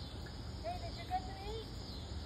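Steady high chirring of insects, crickets, in the background, with a faint voice-like call briefly in the middle.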